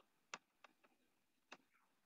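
Near silence, broken by three faint, brief clicks.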